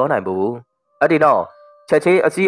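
A narrator's voice speaking Burmese in two short phrases, with a brief silence between. Near the end a faint, short steady tone sounds.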